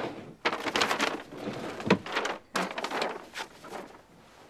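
A dresser drawer sliding open and clothes being rummaged and rustled out of it, with a few sharp knocks.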